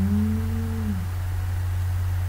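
A man's voice holding one drawn-out humming note for about a second at the start, over a steady low electrical-sounding hum.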